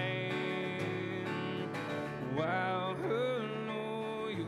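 Acoustic guitar strummed steadily, with a man's singing voice coming in about halfway through and ending on a long held note.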